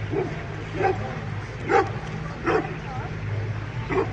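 A dog barking at the passing boat, four short barks a little under a second apart, over the steady low hum of the pontoon boat's motor.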